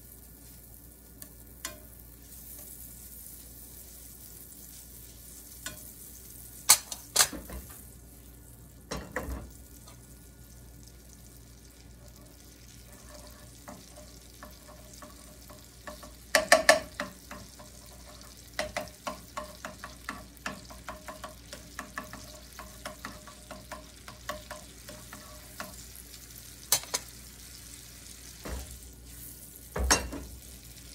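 Butter melting with a faint sizzle in a nonstick frying pan while a slotted spatula pushes it around. The spatula knocks and scrapes against the pan: a few sharp taps about a quarter of the way through, a louder cluster about halfway, then a run of lighter taps, about two a second, for several seconds.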